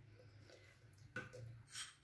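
Near silence: faint room hum, with a soft faint knock a little past halfway and another faint small sound near the end.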